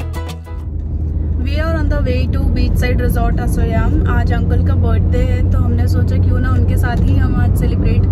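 Inside a Suzuki car's cabin: a steady low rumble of engine and road noise while driving, after background music cuts off about half a second in.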